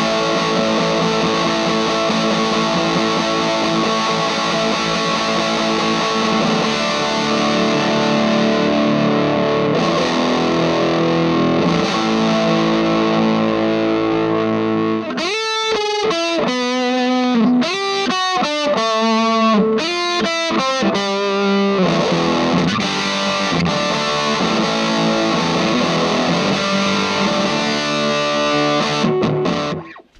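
Electric guitar played through a Vox AC4C1-12 4-watt valve combo with the gain and volume maxed, giving heavy overdriven distortion from its Celestion V-Type speaker. Mostly held, ringing chords, with a stretch of separate picked notes about halfway through. It stops just before the end.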